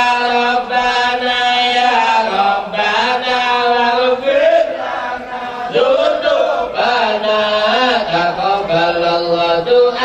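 Melodic Islamic religious chanting: a voice holds long drawn-out notes that bend and waver from phrase to phrase.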